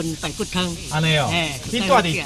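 Speech only: people talking back and forth in conversation.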